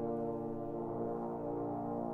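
Trombone choir playing a sustained chord of several held notes.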